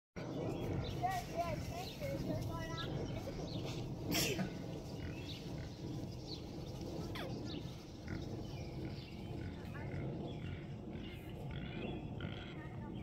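Horses being ridden in a sand arena, with indistinct voices and animal sounds, and one short, loud, noisy burst about four seconds in.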